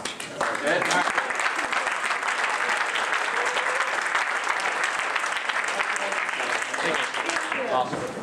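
Audience applause, starting about half a second in and dying away just before the end.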